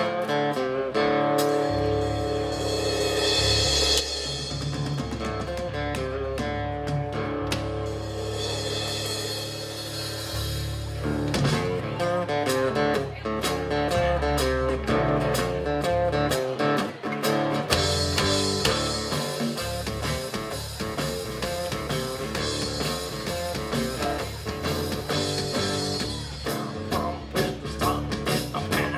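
Live band playing an instrumental build-up on guitars and a drum kit. Sustained guitar chords with swelling cymbals open it, and the playing and drumming get busier about eleven seconds in.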